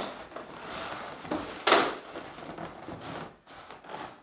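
Inflated latex balloons rubbing against each other as a balloon cluster is twisted and wrapped into another, with one louder rub a little under two seconds in.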